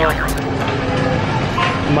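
Voices over steady background noise in a busy walkway; a rapid regular clicking with a low hum cuts off suddenly about half a second in.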